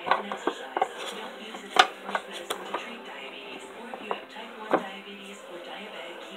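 Trading cards being handled and dug through in a metal tin, giving a few scattered light clicks and knocks against the tin, the sharpest about two seconds in and near the end. A television plays faintly in the background.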